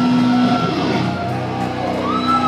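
Heavy metal band playing live, loud distorted electric guitar to the fore: a held low note gives way to a falling pitch slide about half a second in, then sustained notes ring on.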